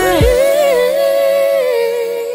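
Slow OPM ballad: a male singer holds one long sung note that wavers a little in pitch and then steadies, over soft accompaniment. The low bass and drums drop out about half a second in, and the note eases off near the end.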